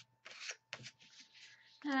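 A sheet of paper being handled and laid flat on a work surface: a few short, soft rustles in the first half.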